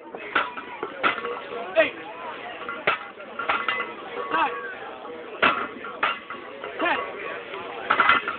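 Loaded deadlift bars clinking and knocking in a run of sharp metallic impacts as the lifters set them down between reps, under a crowd's voices and shouted rep counts.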